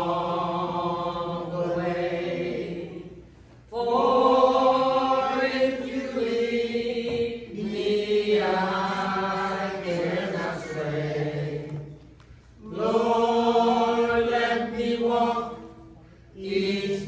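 A church congregation singing a slow hymn together in long, held phrases, with short pauses for breath about three and a half seconds in and again around twelve seconds.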